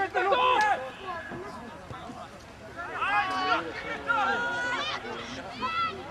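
Voices shouting and calling out across a football pitch during play: several short loud shouts, and one long held call about four seconds in.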